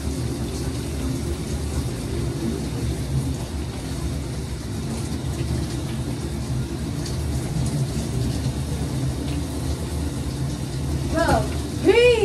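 Shower water running steadily behind the curtain, a constant low rushing noise. A short voice cry breaks in near the end.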